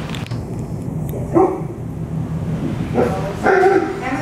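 A dog barks a few short times.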